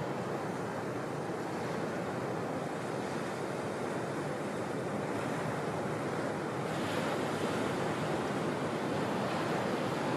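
Ocean surf: the steady rush of breaking waves and white water, getting a little louder about seven seconds in.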